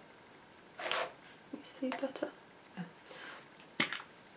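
Small glass candle jar with a screw lid being handled and opened: a few light clicks and scrapes, with one sharp click near the end.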